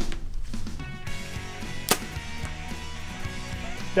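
Background music, with one sharp crack about two seconds in from an arrow shot at a 3D foam target.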